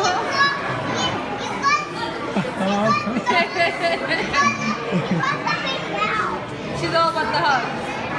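Young children's high-pitched voices, excited squeals and babble, over a background of room chatter.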